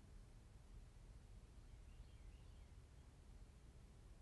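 Near silence: faint low room noise, with a brief faint high chirp about two seconds in.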